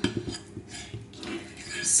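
A utensil clinking and scraping against a metal mixing bowl, a few light separate knocks.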